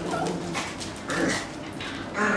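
Small dogs whining and yipping while they play, in two short calls about a second apart.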